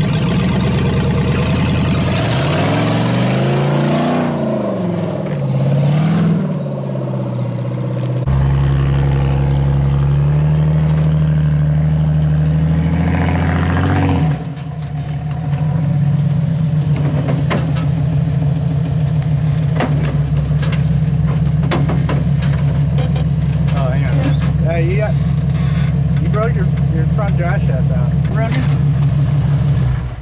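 Off-road crawler engines working on a steep dirt climb: the engine revs up and down several times near the start, then pulls steadily under load. About halfway through the sound shifts to another rig's engine running steadily under load until the end.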